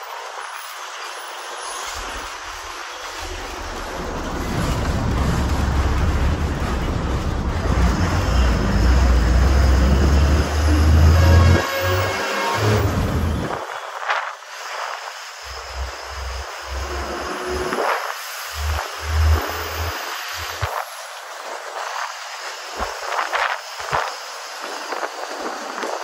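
Ride noise of a city bus heard from beside an open window: engine and road noise with wind buffeting the microphone. The rumble builds to its loudest around ten to twelve seconds in, cuts off suddenly a little later, then comes and goes in shorter gusts.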